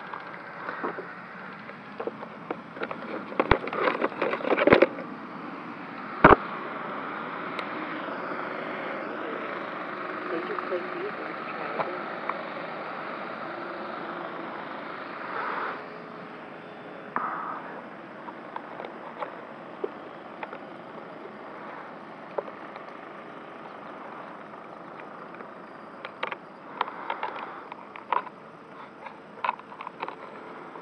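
Handling noises of a model airplane on a wooden stand: a few sharp knocks and clicks in the first several seconds, then a cluster of small clicks near the end as hands work at the nose, over a steady outdoor background.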